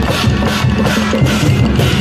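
A temple-procession drum troupe playing: large drums and cymbals struck in a steady, loud, dense rhythm.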